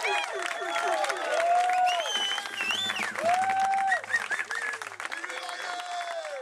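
A small crowd of guests clapping, with several voices calling out and cheering over the applause.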